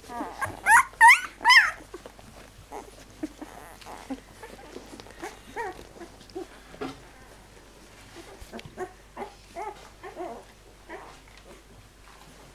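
11-day-old flat-coated retriever puppies squealing: a run of loud, high-pitched rising-and-falling squeaks in the first couple of seconds, then softer, shorter whimpers scattered through the rest.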